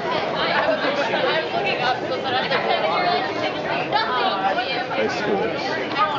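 Steady chatter of many diners and passers-by talking at once, a babble of overlapping voices.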